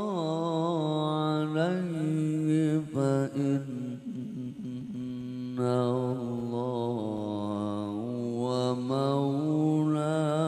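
A man reciting the Quran in the melodic tilawah style into a microphone, amplified over loudspeakers. He holds long, ornamented notes with a wavering pitch, with a short run of quicker, lower notes midway before another long held phrase.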